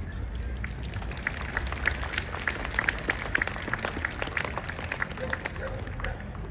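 Scattered hand-clapping from a small crowd, picking up about a second in and thinning out near the end, over a low steady rumble.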